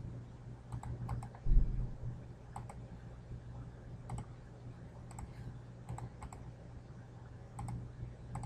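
Computer mouse buttons clicking, each click a quick pair of ticks, about eight times at uneven intervals, over a steady low hum. A single low thump about one and a half seconds in is the loudest sound.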